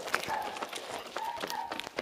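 Hurried, running footsteps with several short, high-pitched voice calls in between.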